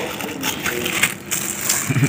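Thin plastic takeaway bag crinkling and rustling in irregular crackles as it is handled and opened by hand.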